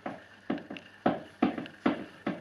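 A regular series of short knocks, about five of them at roughly two a second, each with a brief ring.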